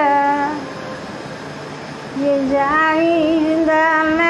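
An elderly woman singing a Tamil lullaby (thalattu) in long held notes. Her voice breaks off less than a second in and picks up again after about a second and a half, sliding between pitches.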